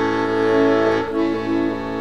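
Piano accordion playing: held chords over a steady low bass note, the upper notes changing about a second in.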